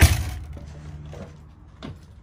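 A loud thump right at the start, then faint shuffling and a light click near the end: someone stepping up into a travel trailer through its entry door.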